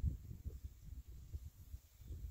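Wind buffeting the microphone outdoors: an uneven, gusty low rumble with no shots.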